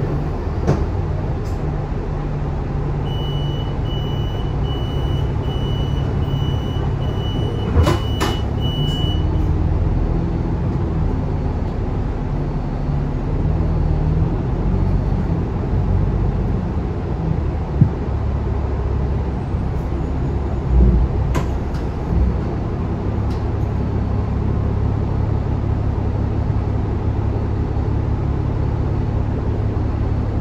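Lower-deck cabin sound of an Alexander Dennis Enviro500 double-decker bus driving in town traffic: a steady low engine and road drone with a few sharp knocks and rattles. A thin high steady tone sounds for about six seconds early on.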